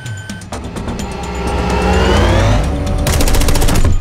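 A rapid burst of automatic rifle fire, about a second long near the end, over a film score that swells with a rising tone.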